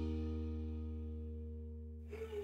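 Background music: a single held chord, struck just before and slowly dying away.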